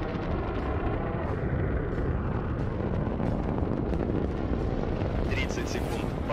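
Soyuz rocket's first- and second-stage engines firing during ascent, a steady, dense rumbling noise heaviest in the low end, heard over the launch broadcast.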